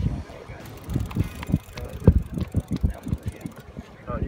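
Wind buffeting the microphone, with irregular knocks and clicks from handling a conventional fishing reel as it is cranked against a fish.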